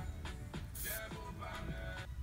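Quiet background music playing under the edit, with a short high hiss about three quarters of a second in.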